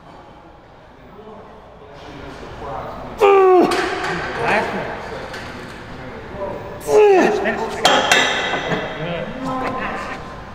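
A man grunting and groaning with strain on a hard pendulum squat set, two loud groans that fall in pitch about three and seven seconds in, with heavy breathing between. There are metallic clinks and knocks from the loaded machine.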